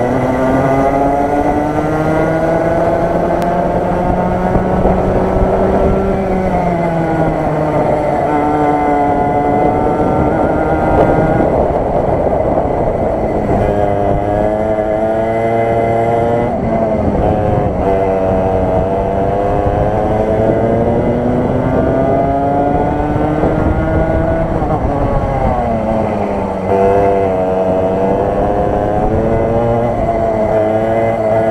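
Rotax Max 125 EVO single-cylinder two-stroke kart engine at racing speed, heard from onboard. Its revs repeatedly climb in long rising whines and drop sharply, over and over, as the kart accelerates out of corners and brakes into the next.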